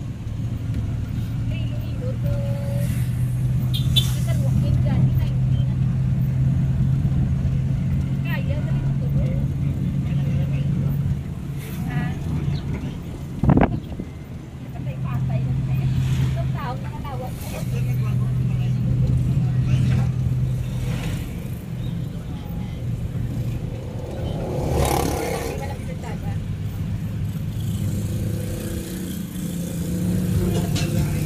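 A road vehicle's engine running steadily while driving, heard from inside the cabin with road noise. The engine hum drops away around the middle and picks up again, with a single sharp knock just before the lull.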